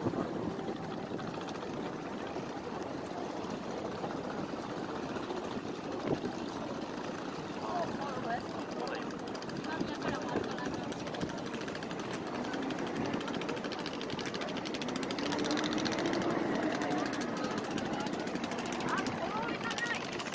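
Busy city street ambience: the indistinct chatter of many pedestrians talking, over the steady sound of traffic passing through a crossing.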